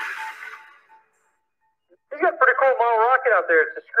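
Video soundtrack: a rushing hiss that fades away within the first second, a second of silence, then a voice from about halfway through with a strongly wavering pitch.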